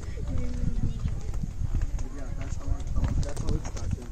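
Irregular footsteps on a stone path with indistinct voices of other people nearby.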